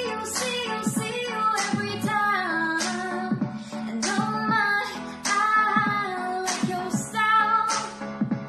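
A woman singing a pop song over instrumental backing, with a sustained low chord and a steady percussive beat.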